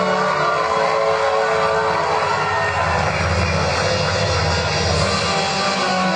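Loud, steady aircraft-engine rumble, a war-scene sound effect played through the hall's loudspeakers between music cues.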